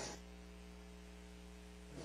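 The tail of the music dies away at the very start, leaving a faint, steady electrical mains hum.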